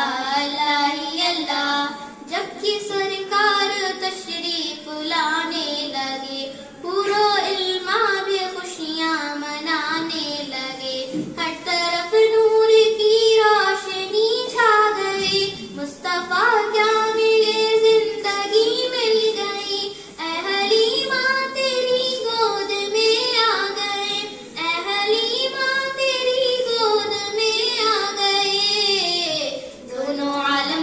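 A young girl singing an Urdu naat, a devotional song in praise of the Prophet, into a microphone in continuous melodic phrases with long held notes.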